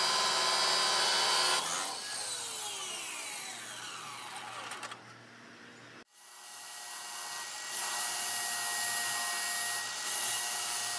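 CLASSIC abrasive chop saw cutting through a threaded steel rod; the cut finishes about a second and a half in and the motor winds down with a falling whine. After an abrupt break around six seconds, the saw spins back up and runs with a steady whine before the next cut.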